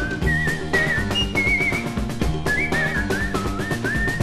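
A whistled melody in short, wavering phrases over a band of piano, bass and drum kit playing a steady rhythm.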